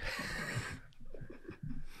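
A person's breathy exhale close to a microphone, lasting under a second, followed by quieter faint sounds.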